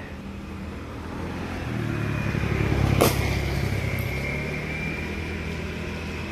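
A motor vehicle passes close by: its engine hum builds, is loudest about halfway through, then fades. A single sharp click comes about three seconds in.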